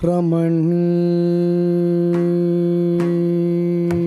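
Carnatic vocal music: a male singer slides through a short ornamented phrase and then holds one long, steady note, with the violin accompanying. A few light mridangam strokes fall in the second half.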